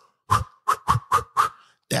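A man making a vocal sound effect with his mouth for something moving really fast: about five quick, short bursts in a row.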